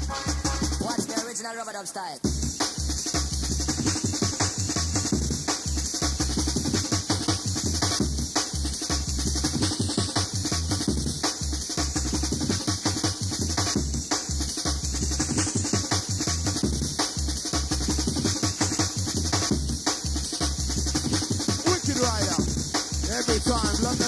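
Jungle DJ mix with a fast breakbeat and heavy bass. The bass and drums drop out briefly about a second in, then come back in hard about two seconds in.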